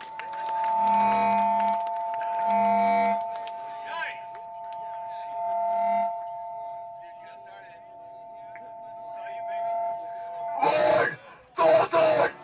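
Electric guitar amp feedback holding two steady high tones, with a few short held low notes under them. Near the end the metal band comes in with two loud full-band hits.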